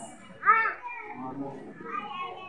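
Children's voices: a loud, high-pitched call about half a second in, then quieter overlapping chatter.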